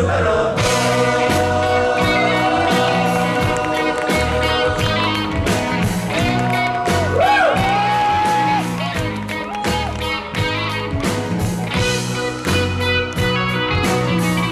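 A rock band playing live: a sung vocal line over electric guitar, bass, keyboards and drums with a steady repeating bass figure.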